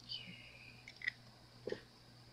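Small plastic LED tea light being handled on a craft table: a short squeak that falls in pitch at the start, then a few light clicks and a soft tap near the end.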